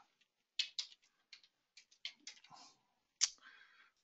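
Faint clicks of computer keyboard keys: about ten scattered keystrokes, typing a stock ticker symbol into charting software. A single louder keystroke comes a little after three seconds in.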